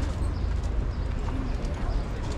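Footsteps on a city pavement, about two steps a second, over a steady low rumble, with the voices of passers-by.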